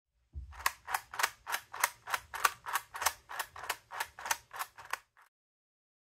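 3D-printed plastic seven-segment mechanical counter's ratchet clicking as it is cycled through its numbers: about fifteen sharp clicks, roughly three a second, stopping about five seconds in.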